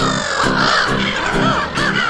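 Gulls calling over background music with a steady beat.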